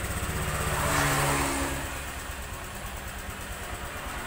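Honda Vario 150 scooter's single-cylinder fuel-injected engine idling, just started from an aftermarket alarm remote without the ignition key. It runs louder for a moment about a second in, then settles to a lower, steady idle.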